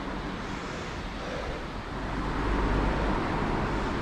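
Steady traffic rumble and hiss, swelling louder about two to three seconds in as a vehicle passes over the steel bridge overhead.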